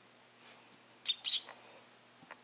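Squeaky plush dog toy squeaking sharply twice in quick succession, about a second in, as a puppy bites down on it.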